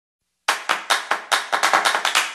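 Rhythmic handclaps, about five sharp claps a second, starting suddenly about half a second in: the clap percussion opening an intro jingle.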